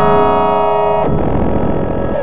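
DIN Is Noise microtonal software synthesizer playing a held chord of many steady tones. About a second in, it gives way to a dense, noisy, distorted texture with brief sliding tones near the end.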